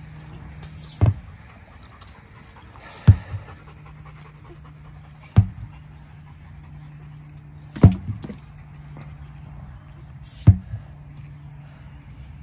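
Sledgehammer slammed down onto a large tractor tire, five heavy thuds about two to two and a half seconds apart.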